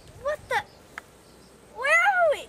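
A girl's wordless waking sounds: two short rising calls, then a longer call that rises and falls near the end, like a drawn-out groan or yawn as she stretches.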